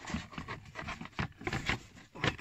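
A car's plastic interior trim cover being maneuvered into place: an irregular run of small clicks and knocks, with plastic rubbing and scraping against plastic.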